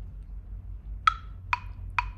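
Metronome clicking at 132 beats a minute, starting about a second in: three sharp clicks, the first pitched a little higher than the others.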